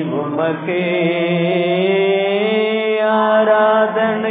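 A church congregation singing a Tamil worship hymn unaccompanied, their voices drawing out long held notes together.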